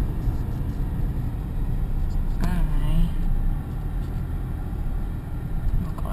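Low, steady rumble of a car driving slowly, heard from inside the cabin, with a brief voice about halfway through.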